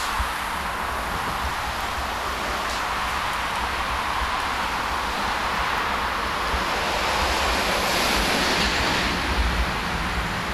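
Wind buffeting the camera microphone, an uneven low rumble over a steady outdoor rush.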